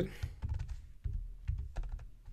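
Typing on a computer keyboard: a run of short, irregularly spaced key clicks as a line of code is typed.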